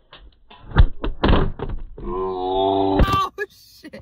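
Thumps and knocks of a phone being handled and bumped inside a car, the loudest about a second in. About two seconds in comes a steady held tone lasting about a second.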